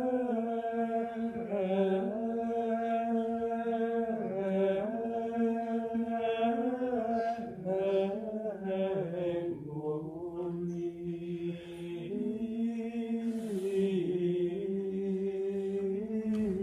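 Latin liturgical plainchant (Gregorian chant): sung voices carry a slow melody of long held notes that step up and down in pitch, softening briefly around ten seconds in.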